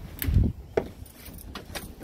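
A dull thump about a quarter second in, then a few light clicks and a metallic jingle: footsteps and a small dog moving on a wooden deck.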